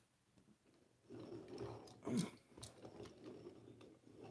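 Faint rustling and clicking of die-cast metal toy engines being handled and set down on a felt mat, with one louder knock about two seconds in.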